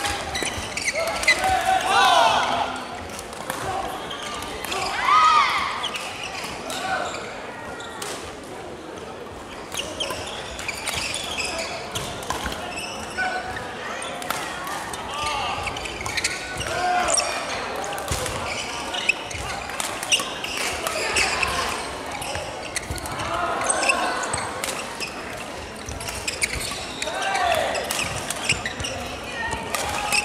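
Badminton doubles rally in a large sports hall: short sharp racket strikes on the shuttlecock and court shoes squeaking on the wooden floor, with players' shouts and voices in the hall.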